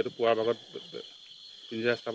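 Insects chirring at night in an even, high-pitched drone that runs under a man's speech and stands alone in the pause in the middle.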